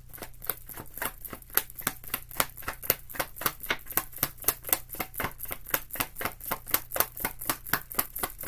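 A deck of tarot cards being shuffled by hand: a steady run of crisp card slaps at about five a second.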